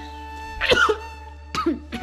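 Soft background music with long held notes, broken twice by a short, loud, cough-like vocal burst from a person whose pitch drops: once about half a second in and again near the end.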